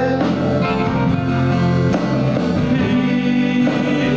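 Live band playing an Austropop song, with guitar, and several singers singing together at their microphones.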